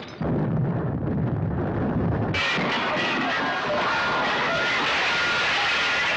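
Disaster-film trailer soundtrack: a deep, muffled rumble for about two seconds, then a sudden loud din of crashing noise with steady high tones running through it, as the ocean liner capsizes.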